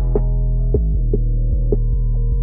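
Dark trap instrumental beat, muffled with its high end cut: a deep sustained bass and steady low synth notes under four short drum hits.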